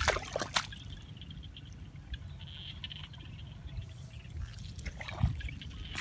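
Hands working through wet mud and shallow water in a rice paddy: a few splashes and squelches in the first half second, a dull thud about five seconds in, and soft sloshing between.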